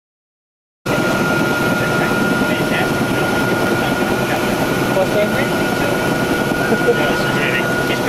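Helicopter cabin noise: the turbine engine and rotor running steadily, with a high steady whine over the rumble. It cuts in suddenly about a second in.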